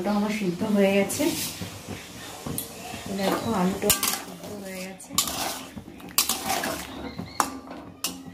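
Long metal spatula stirring potatoes boiling in water in an aluminium wok, striking and scraping the metal pan in a handful of separate clinks.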